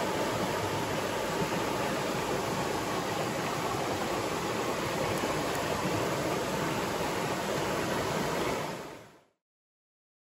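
River rapids: a steady, even rush of water that fades out near the end.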